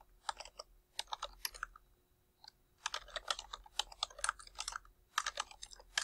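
Typing on a computer keyboard: quick runs of key clicks, with a pause of about a second around two seconds in.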